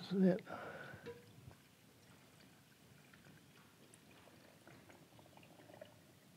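A brief voice sound just after the start, then pickling brine poured from a stainless steel pot into a glass jar packed with herring and onions, a faint pouring with small ticks.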